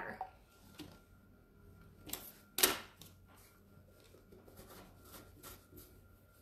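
Light clicks and taps of bottles being handled as a little gold metallic paint is poured into a bottle of water, with one louder clack about two and a half seconds in.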